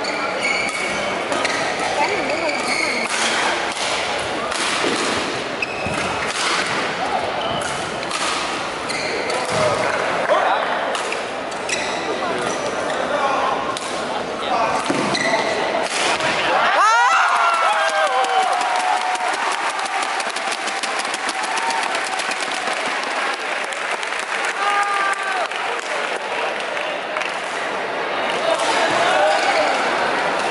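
Badminton play in a sports hall: sharp racket hits on the shuttlecock and squeaks of court shoes, over steady spectator chatter. About halfway through, the low background rumble drops out suddenly.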